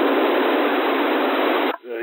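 Unsquelched narrow-FM receiver hiss on a 27 MHz CB channel between transmissions: a loud, even rush of static. It cuts off sharply near the end as the next station keys up, and a voice begins over the radio.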